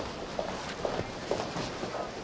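Several footsteps on a hard office floor, coming at an uneven pace as people walk off.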